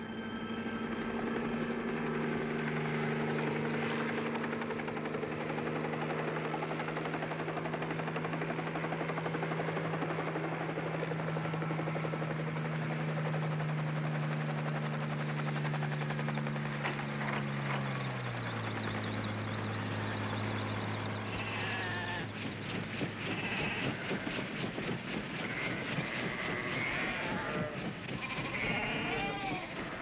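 Bell 47 helicopter's engine and rotor running steadily, then dropping in pitch about two-thirds of the way through as it settles down. Sheep bleat over it in the later part.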